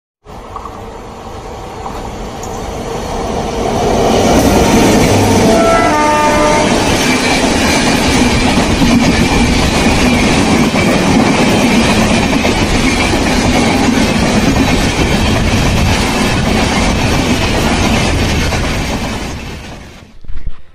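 Electric-locomotive-hauled passenger train approaching and running past close by, a loud, steady rumble of wheels and coaches that builds over the first few seconds. A brief horn sounds about six seconds in, and the sound fades out near the end.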